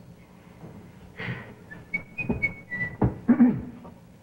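A person whistling a short phrase of about five quick notes, stepping up and back down in pitch. Around it come a few sharp knocks, the loudest a thump near the end of the whistling.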